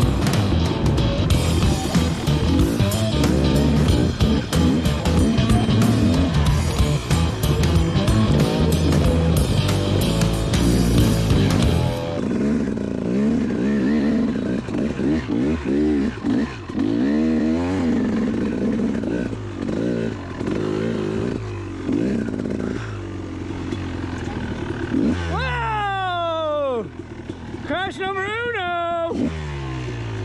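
Background music with a steady beat for about the first twelve seconds, then two-stroke dirt bike engines revving up and down over a snowy trail. Several sharp rev rises and falls come near the end.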